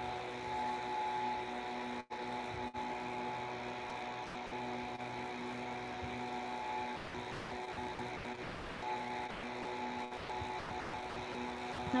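Steady electrical hum, a stack of even tones, coming through an open microphone on the video call, with no voice on the line. The audio cuts out briefly twice about two seconds in.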